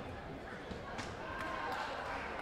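Thumps and slaps from a close-range taekwondo exchange, with a sharp one about halfway through, over voices in the background.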